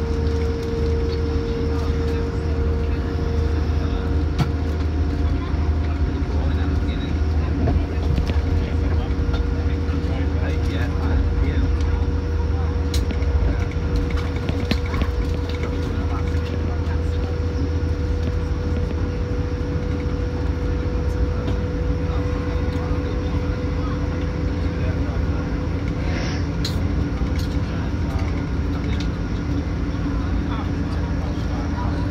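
Cabin of a moving passenger train: a steady low rumble with a constant hum, and a few scattered clicks and knocks.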